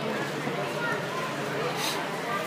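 Many overlapping voices chattering at once, with no single voice standing out, and a brief hiss near the end.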